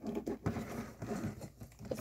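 S.H. MonsterArts Godzilla action figure being handled and posed: irregular soft clicks and rubbing of plastic as its parts are moved.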